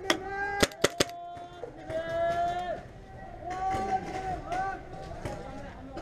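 Shouting voices in long, high, drawn-out calls, with four sharp cracks of paintball fire in the first second.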